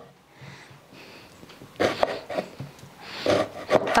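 Kitchen knife cutting through a large raw onion on a wooden cutting board: two short cuts, about two seconds in and again a little past three seconds, the first ending in a knock of the blade on the board.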